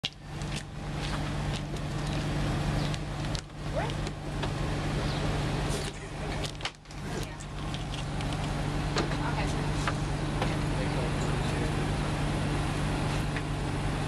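A steady low engine hum, with scattered sharp knocks and clicks over it.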